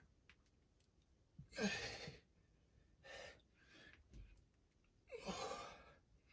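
A man breathing hard while doing push-ups: two loud, forceful exhales about three and a half seconds apart, with quieter breaths between.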